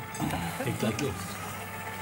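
Low, indistinct speech for about a second, then quieter studio background.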